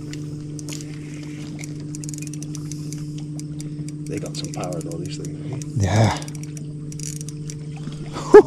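A boat motor running steadily, a constant hum, while a fish is played off the boat. Brief muffled voices come in around the middle, with a short louder one about six seconds in.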